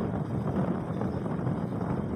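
Steady rush of road and wind noise from a moving vehicle, with wind buffeting the microphone.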